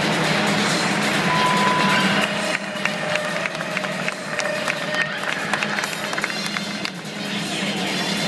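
Accompaniment music for a rhythmic gymnastics routine played over an arena's loudspeakers, heard from the stands with crowd noise, turning quieter about two seconds in.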